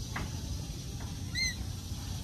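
A single short, arched bird chirp about one and a half seconds in, over a low steady outdoor rumble.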